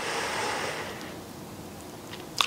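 A soft breathy rush of noise lasting about a second, one long exhale, fading to a faint steady hiss.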